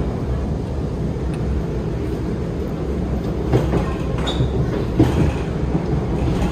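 Alstom Movia R151 metro train heard from inside the carriage, running at speed on elevated track: a steady low rumble of wheels and running gear. A few short knocks come in the second half.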